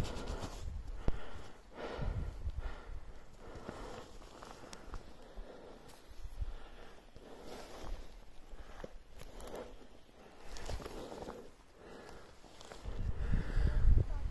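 Footsteps on a snow slope with a climber's breathing, while the handheld phone is jostled and wind buffets its microphone.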